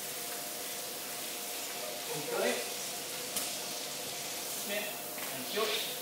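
Hand-held shower hose running with a steady spraying hiss, over a steady low hum.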